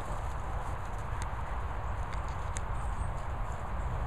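Steady low rumble of wind on the microphone, with soft footsteps on grass and a few faint ticks.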